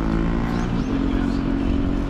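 A large engine running steadily, a low droning hum whose pitch shifts slightly about a second in.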